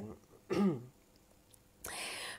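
A man briefly clears his throat, a short 'hm' falling in pitch, in a pause in his speech, then draws a noisy breath near the end.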